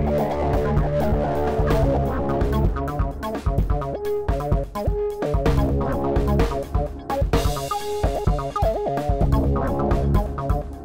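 A recorded band mix playing back, with drum kit, bass and guitar, run through a chain of Airwindows Desk console-emulation plugins while the instances are switched off one at a time so the sound cleans up.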